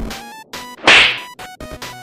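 A sharp whip-crack or slap sound effect about a second in, over a short music sting of quick stepping notes.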